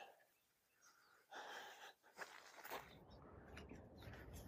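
Near silence, with a few very faint brief sounds.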